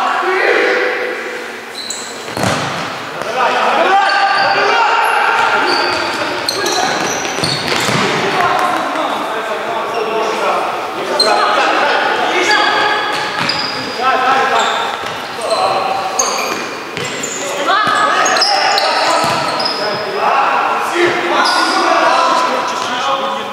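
Futsal being played in an echoing sports hall: players' voices calling out over the ball being struck and bouncing on the wooden court, with short, high squeaks of shoes on the floor throughout.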